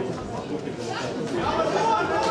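Spectators chattering, with many overlapping voices in a large hall.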